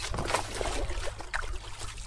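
Water lapping and splashing around the boards, with a few short splashy strokes over a steady low rumble.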